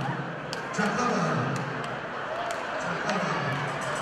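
A man talking through a stage microphone and PA speakers, with a few sharp knocks scattered among his words.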